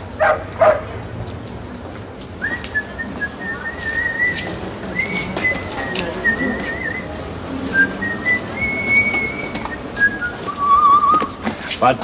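A person whistling a slow tune, a single clear tone that steps between notes, ending near the end with a warbling trill on a lower note.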